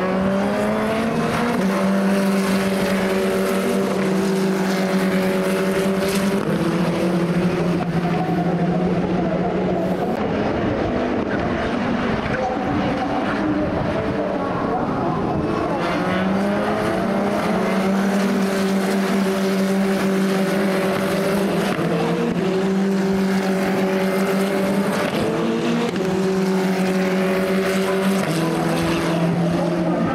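Formula Regional single-seater racing car engines running at high revs on the circuit, the pitch climbing and then dropping in steps at gear upshifts several times.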